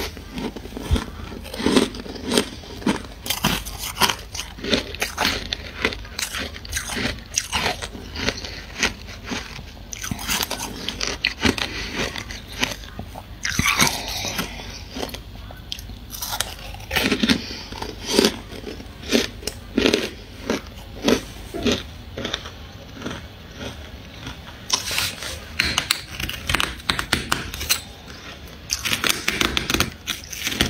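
A person biting and chewing freezer frost, with many irregular, crisp crunches of packed ice crystals.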